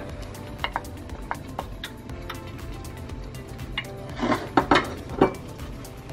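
Soft background music, with light clicks and then a few louder knocks about four to five seconds in: utensils tapping against a plate and an enameled cast-iron pan as chopped garlic is scraped into the oil and stirred.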